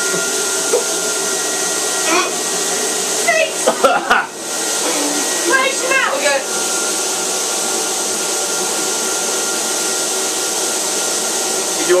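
Spray tan machine running steadily, its turbine whining over the hiss of air and tan solution from the hand-held spray gun.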